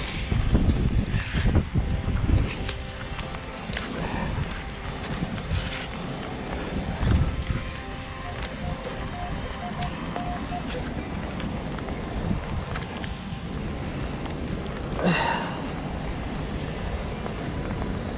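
Wind and rain buffeting the microphone, with a metal beach scoop digging into wet sand. About nine seconds in, a short run of beeps comes from the Minelab Equinox 800 metal detector pinpointing the target.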